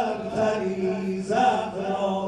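A single man's voice chanting a mourning elegy through a public-address system, in a slow, sliding style with long held notes.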